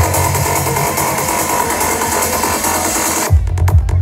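Electronic trance dance music played by a DJ over a large sound system: the kick drum and bass drop out while a dense hissing noise build-up fills the high end, then the kick and rolling bass crash back in abruptly about three seconds in, at a little over two beats a second.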